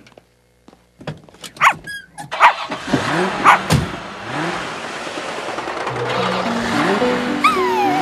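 Car sound effects: a few knocks and clatters, then the car moving off with a steady driving rumble. Background music comes in over it near the end.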